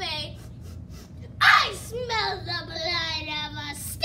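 A child's voice: a sharp breathy burst about a second and a half in, then a long drawn-out vocal sound with a wavering pitch, neither plain words nor clear song.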